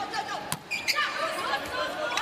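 A volleyball serve: one sharp hit on the ball about half a second in, then a lighter knock, over the chatter of an arena crowd.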